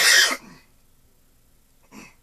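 A man coughs once: a single short, loud, harsh burst lasting under half a second, then quiet apart from a faint short sound near the end.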